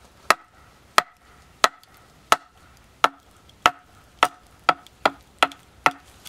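A wooden club striking the back of a hatchet head, driving the blade down to split the top of an upright wooden stake: about eleven sharp knocks, roughly one every two-thirds of a second and quicker toward the end, each with a short ring.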